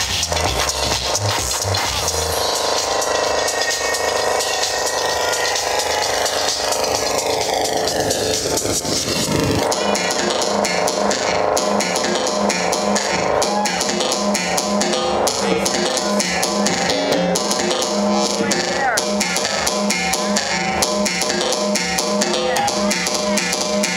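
Electronic dance music from a live DJ mix played loud over a sound system: the bass beat drops out about two seconds in for a breakdown with a long downward sweep, and a steady beat with a pulsing bass comes back in about ten seconds in.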